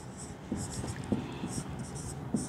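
Marker pen writing on a whiteboard: a quick run of short strokes starting about half a second in.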